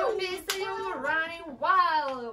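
Young women's voices talking animatedly, with one sharp hand clap about half a second in.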